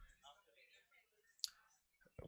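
Near silence with a faint voice murmuring in the first second and a single short click about one and a half seconds in.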